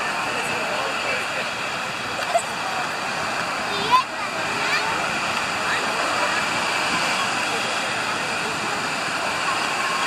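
Steady wash of ocean surf breaking on a sandy beach, with faint distant voices of people in the water. A short sharp sound comes about four seconds in.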